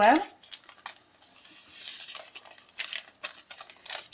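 A small paper sachet of vanilla sugar crinkling and crackling as it is torn open and emptied over a bowl. There is a brief hiss about a second and a half in.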